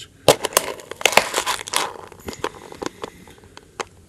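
A cardboard Minecraft Chest Series blind box being pried at by hand, with a run of crinkling and sharp cardboard clicks that is densest in the first two seconds and thins out afterwards. The box does not open this way.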